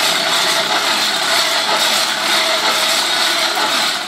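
Hand-cranked fan blower on a mud cookstove running steadily, a loud rush of air with a faint steady whine, forcing air into the fire.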